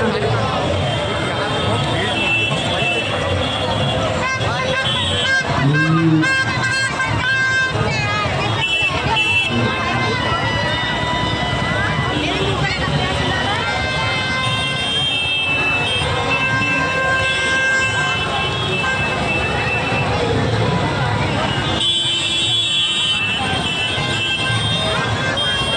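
Crowded street din: many voices chattering over traffic, with vehicle horns sounding several times as held tones.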